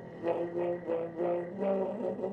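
Slide trombone playing a phrase of about six short notes in a jazz trio, with little deep bass under it.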